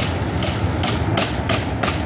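Repeated hammering, about three sharp strikes a second, over a steady low engine hum.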